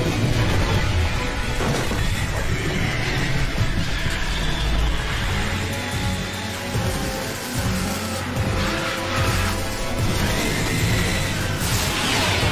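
Film soundtrack music playing continuously with sound effects mixed in, and a sudden noise burst just before the end.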